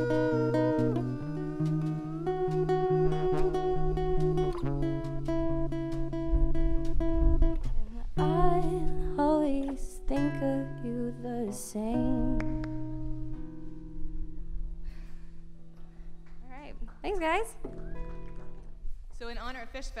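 Live acoustic guitar and female vocals ending a song: long held sung notes with vibrato over strummed chords. In the second half the music thins to sparse guitar notes and voices.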